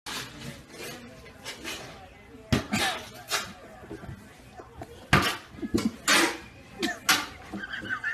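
Metal snow shovel blade scraping over snow-covered pavement in several short strokes.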